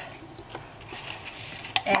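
Faint handling noises of dishes on a kitchen counter, with a light click as a hand takes hold of a ceramic bowl near the end.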